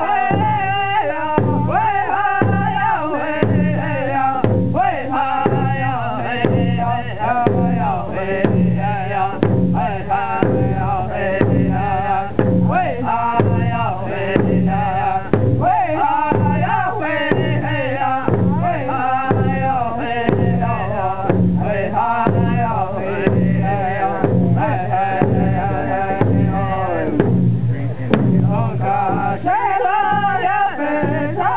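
Powwow drum group: men singing together over a large hide drum, struck by several singers with drumsticks in a steady, even beat.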